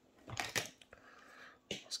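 Faint clicks and light handling noise of pocket knives being set down and picked up on a wooden table, with a sharper click near the end.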